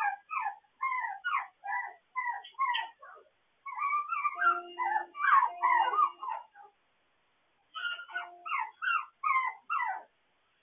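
Puppies whining and yipping in quick runs of short cries that fall in pitch, a few a second, with a pause of about a second after the middle.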